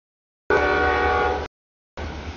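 A freight train passing over a grade crossing, heard as a low rumble, with a locomotive air horn chord sounding for about a second. The sound cuts in and out abruptly, with dead silent gaps between short bursts.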